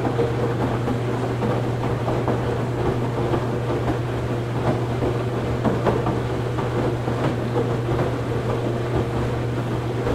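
Washing machine running: a steady low motor hum and drone, with faint irregular ticks and knocks scattered through it.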